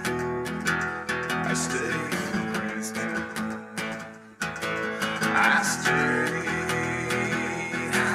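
Acoustic guitar strummed in a steady rhythm, with no singing. The strumming drops away briefly about four seconds in, then comes back at full strength.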